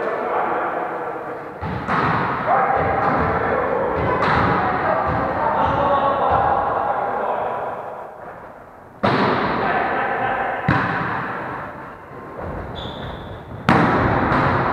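Volleyball being struck during a rally, several sharp slaps of hands on the ball echoing through a large gym, the loudest hit near the end.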